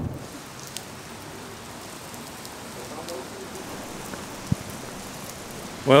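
Steady rain falling on paved ground, an even hiss, with one short knock about four and a half seconds in.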